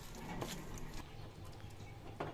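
Metal spoon stirring shrimp and lentil batter in a steel bowl, giving a few light clicks against the bowl, over a low steady hum.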